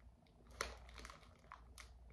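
Faint crinkles and a few light clicks of clear plastic wax-melt packaging being handled, close to near silence.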